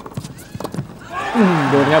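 A few sharp racket hits on a tennis ball in a quick volley exchange, then from about a second in the crowd breaks into cheering and applause as the point ends, under an excited commentator's voice.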